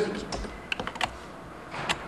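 A handful of sharp, irregular clicks and light taps, some close together, like keys or small hard objects being handled.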